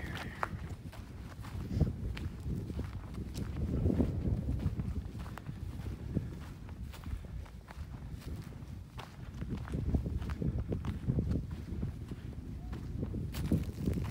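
Footsteps of a person walking over dry leaf litter and grass, with scattered small crackles of leaves and twigs underfoot.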